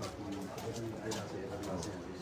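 Crowd chatter: several people talking over one another at once.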